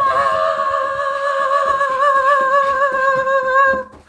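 A single long hummed note, high-pitched with a slight waver, held for almost four seconds and stopping just before the end, over faint low thumps.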